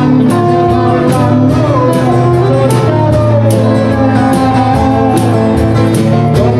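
Live band playing a Neapolitan song medley: acoustic guitar and electric guitar over a drum kit with regular cymbal strokes, and a lead melody that slides between notes.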